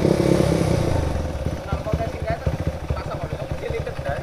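Single-cylinder four-stroke motorcycle engine dropping back from a rev to a lumpy, uneven idle. Just before, it is called "brebet": sputtering and hesitating.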